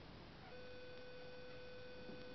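A faint, steady, buzzy tone starts about half a second in and holds at one pitch, over a low background hiss.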